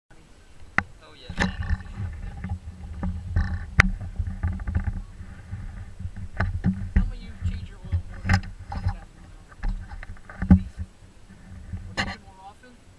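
BMW E39 M5's V8 engine idling, heard from inside the cabin as a steady low hum that starts about a second in. Scattered sharp knocks and bumps sit over it.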